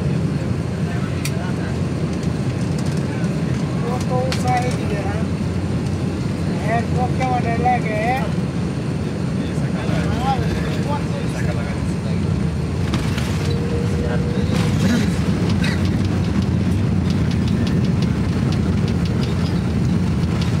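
Airliner cabin noise during the takeoff roll: a steady low rumble from the engines at takeoff power and the wheels running on the runway.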